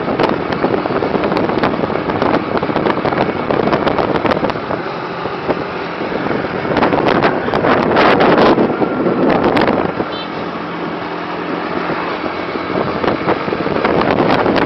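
Road noise from a vehicle driving along, with wind buffeting the microphone, swelling louder about seven to eight seconds in.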